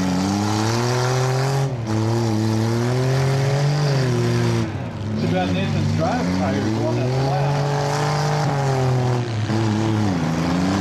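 Demolition derby compact cars' engines revving hard under load while pushing into each other, the pitch climbing and falling, with brief let-offs about two and five seconds in.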